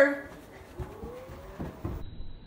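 A voice trails off, then a faint rising vocal sound, and a few soft low thumps near the end as someone runs across carpet.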